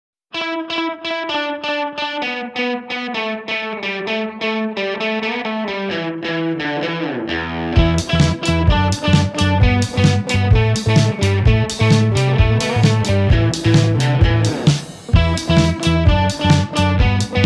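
Indie rock music: an electric guitar plays a quick run of repeated notes, and drums and bass come in about halfway through.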